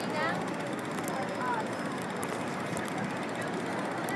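Busy city street ambience: a steady wash of traffic and crowd noise with indistinct voices of passers-by.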